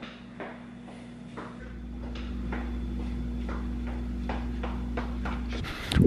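A few faint knocks, then from about a second and a half in the low rumble of a handheld camera being carried while someone walks, with soft footfall thuds two to three a second. It cuts off shortly before the end.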